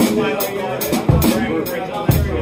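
A live rock band playing a song, with a drum kit's kick, snare and cymbal hits over guitar and bass, heard through the room's PA.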